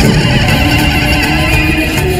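Loud dramatic background score: held notes over a deep, dense low end, with no speech.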